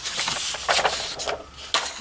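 Large sheets of patterned paper sliding and rustling as they are moved by hand across a tabletop, with two sharper crackles, one just under a second in and one near the end.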